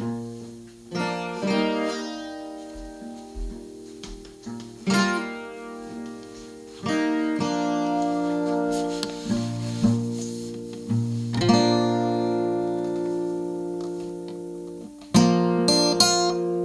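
Solo small-bodied acoustic guitar played slowly: single chords struck and left to ring out and fade, a few seconds apart, turning to quicker, louder picking near the end.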